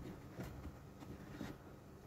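Near-quiet, with a few faint plastic clicks as the touchpad of a Mercedes-Benz W222 center console is worked loose and lifted out by hand.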